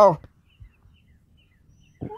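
A voice finishes a word right at the start, then near silence with a faint low background rumble and a few faint, short high peeps.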